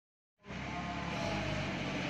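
Forklift running steadily as it drives while carrying a load, starting about half a second in.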